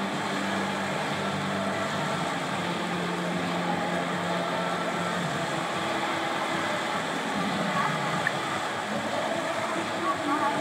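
Steady wash of indoor swimming-pool noise from swimmers moving through the water, with faint held low tones underneath.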